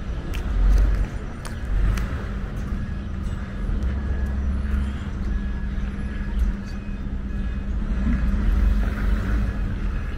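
Steady low rumble of motor vehicles, rising and falling in loudness, with a faint steady hum and light scattered clicks over it.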